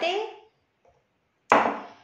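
A ceramic bowl set down on a stone countertop: one sharp knock about a second and a half in, dying away quickly.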